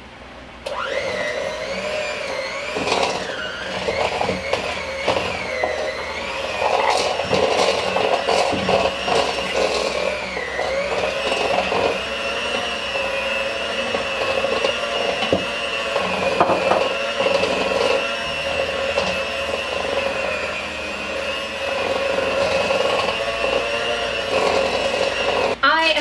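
Electric hand mixer running with a steady whine, its beaters whipping butter, powdered sugar and Baileys Irish cream into frosting in a bowl. The motor starts about a second in, dips in pitch briefly a couple of times as the load shifts, with scattered clicks of the beaters against the bowl, and stops just before the end.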